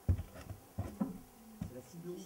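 Indistinct voices talking, with a few low thumps; the loudest thump comes just after the start.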